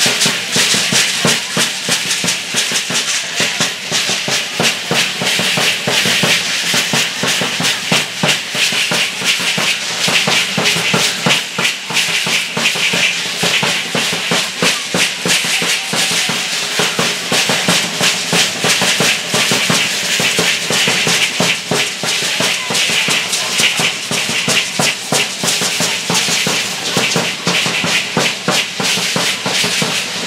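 Matachines dance music: many hand-held rattles (sonajas) shaken together in a fast, steady rhythm, with a drum beating under them.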